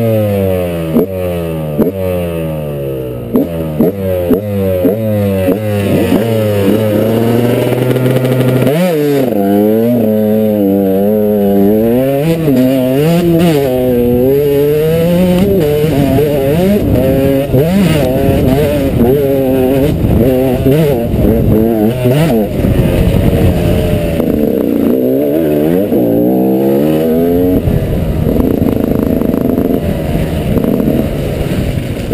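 Enduro dirt bike engine heard close up from the riding bike, revving hard and changing up through the gears in the first several seconds, then rising and falling with the throttle over rough ground. Sharp knocks and clatter from the bike hitting ruts come through the whole time.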